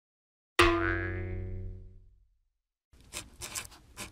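A cartoon 'boing' sound effect about half a second in: one sharp pitched twang that rings down and fades over about a second and a half. About three seconds in, a pen starts scratching on paper again.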